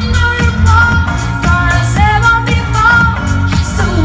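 A young girl singing live into a microphone over a pop backing track with a steady beat. She holds long notes that slide and bend between pitches.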